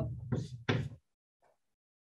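Chalk striking and writing on a blackboard, two sharp knocks in the first second.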